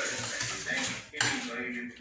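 Fingers scraping and scooping food on metal plates, the plates clinking and rattling, with a louder clatter a little past a second in.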